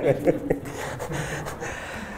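Audience laughing in a room, a diffuse ripple of laughter that follows the last of a man's words in the first half second.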